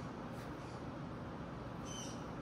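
Faint pencil scratching on paper as a child writes a letter, pressing hard, over steady room tone, with two brief faint high squeaks about half a second in and near the end.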